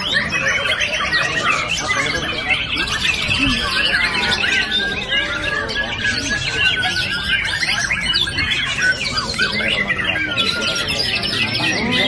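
Several caged white-rumped shamas (murai batu) singing at once in competition, a dense tangle of overlapping whistled phrases with quick rising and falling notes.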